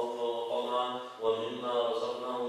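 A man's voice reciting in a chant, with long held notes and a short break about a second in.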